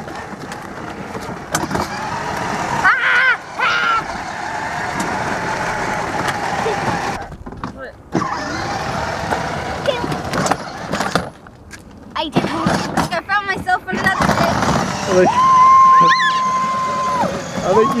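Battery-powered Kid Trax Kia Soul ride-on toy car driving over asphalt: its motor and wheels make a steady running noise, with voices scattered through it. A steady high beep sounds for about two seconds near the end.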